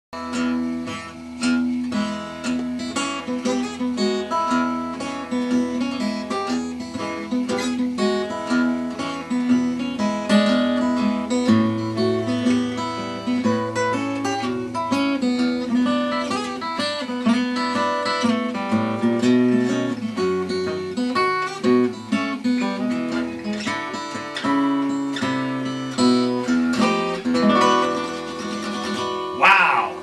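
Morgan Monroe acoustic guitar fingerpicked in a blues style: a thumbed bass line under picked melody notes, played continuously and closing with a strum near the end.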